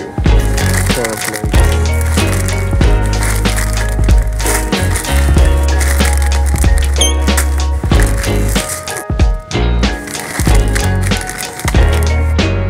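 Background music with a heavy bass line and a steady beat, dropping out briefly about nine seconds in.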